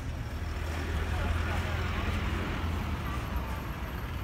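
Street traffic: a vehicle passing on the road, a low rumble with tyre noise that swells about a second in and fades near the end, under faint voices.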